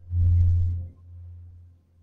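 A steady low hum that swells loud for most of the first second, with a faint hiss over it, then falls back to a softer level.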